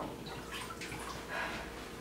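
Water sloshing and dripping in a kitchen sink as a raw chicken is lifted and handled in salted wash water, in uneven patches of splashing.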